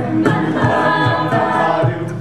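A mixed-voice a cappella group singing sustained harmonised chords, with a beatboxer's low kick-drum beats about every half second underneath.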